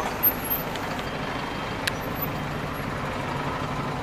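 Steady rumble of a large vehicle's engine and road noise, with one short click about two seconds in.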